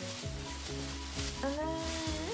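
Thin plastic shopping bag rustling and crinkling as a hand rummages inside it, over background music.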